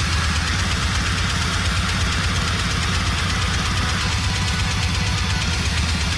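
Death metal track playing loud and steady: distorted guitars and a drum kit in a dense, unbroken wall of sound.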